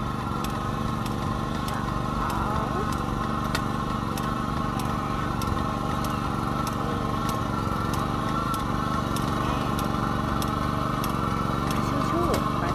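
Japanese-made ride-on rice transplanter running steadily as it works across the paddy, with a light regular ticking about three times a second.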